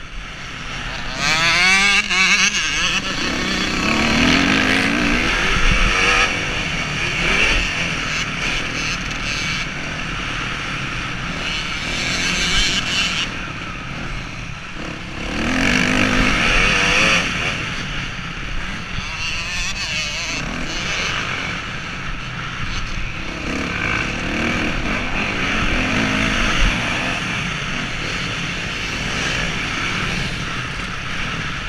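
Motocross bike engine revving hard and backing off over and over as it is ridden around a dirt track, heard from a helmet camera with wind noise on the microphone; a strong rising rev comes about a second and a half in.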